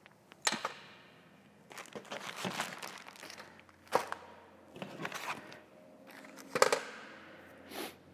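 Small survival-gear items being handled and moved: plastic packets crinkling and rustling, with a few sharp clicks and knocks as items are put down on a table.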